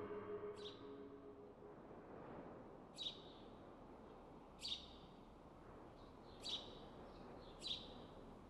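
Small bird chirping: five short, high notes, each sliding down in pitch, spaced about one to two seconds apart, with a few fainter chirps between, over a faint hiss. The tail of background music fades out in the first second or two.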